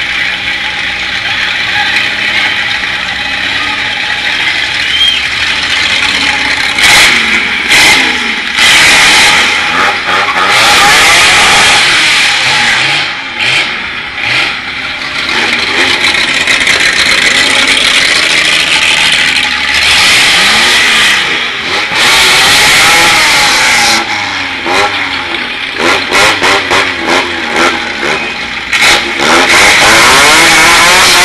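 Car engines revving hard, rising and falling through long high-rev stretches, with a run of quick rev blips near the end.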